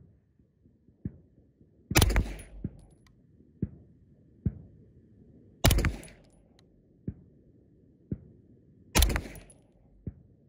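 Three single shots from a Grand Power Stribog SP9A3S 9mm roller-delayed pistol, about two, five and a half and nine seconds in, each a loud crack with a short ringing tail. Fainter sharp knocks come between the shots.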